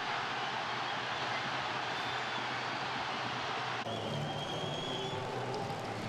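Football stadium crowd cheering after a home goal: a steady roar of many voices. It changes abruptly a little past halfway, where the broadcast cuts to another shot.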